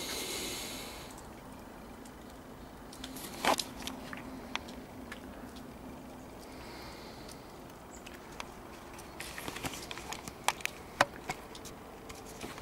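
Camera handling and movement noise from a person walking with a handheld camera: faint rustling with scattered sharp clicks and knocks, one a few seconds in and a quick cluster near the end.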